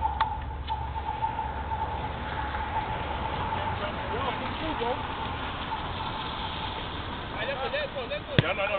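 Outdoor ambience with a steady low rumble and a faint steady hum through the first few seconds, fading after about four seconds, then distant players' shouts near the end.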